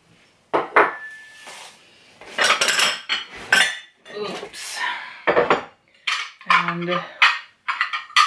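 Pressed-glass serving dishes clinking and knocking against each other as a stack of them is lifted out of a cardboard box, one strike ringing briefly, with rustling as a hand rummages in the box.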